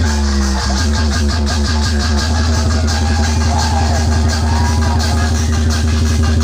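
Loud electronic dance music blasting from large DJ speaker-box stacks, with a heavy, steady bass and a driving beat.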